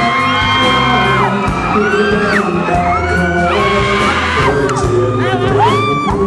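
A male pop singer singing live into a handheld microphone over an instrumental backing with bass and drums. He holds long notes that bend and slide between pitches.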